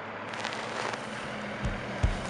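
Roadside traffic noise as a semi-truck turns past, a steady rush with scattered light clicks. A deep bass thump near the end starts a music track.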